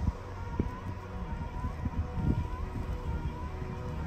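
Low rumble with a few soft knocks as a battery lawn mower with a full grass bag is tipped back on its handle.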